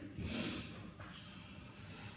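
French bulldog snorting and snuffling at close range: a short breathy snort just after the start, then fainter snuffling.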